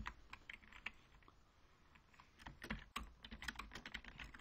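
Faint typing on a computer keyboard: a few scattered keystrokes at first, then a quicker run of clicks in the second half.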